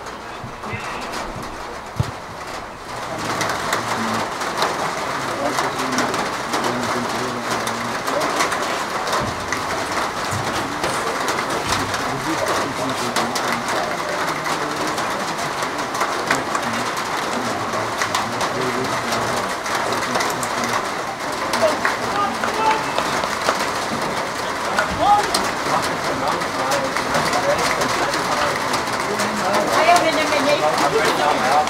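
Open-air ambience of indistinct voices and general noise, with a pigeon cooing. The noise gets louder about three seconds in and then holds steady.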